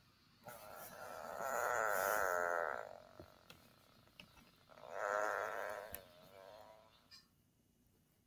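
Two farts with a wavering, buzzy pitch: a long one lasting about two seconds, then a shorter one a couple of seconds later.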